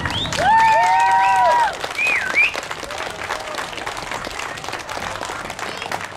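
Audience applauding at the end of a song, with loud, high, held cheering calls and a short wavering whistle over the clapping in the first two and a half seconds, after which the clapping carries on more quietly.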